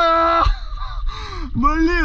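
A man's voice making wordless sounds: a steady, held vocal tone for about half a second, then a short rising-and-falling vocal sound near the end.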